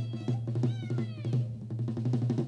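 Folk stage music: a regular drumbeat about four strokes a second over a steady low drone, with a few high, falling pitched glides near the middle.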